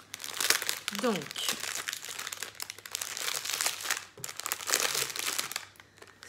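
Clear plastic packet of diamond-painting drills crinkling as it is handled and pressed flat on a table, with loose drills spilled inside it. The crackling is fairly continuous, in many small bursts.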